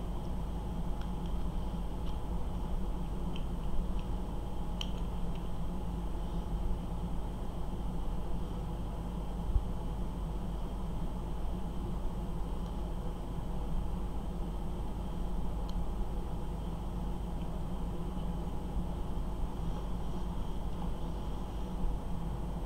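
Steady low room hum, with a few faint, sparse clicks from small plastic model-kit parts being handled and fitted together.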